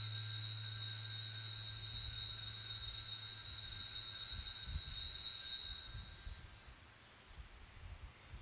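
Altar bell rung at the elevation of the host during the consecration, a steady continuous ringing over a low hum that stops about six seconds in.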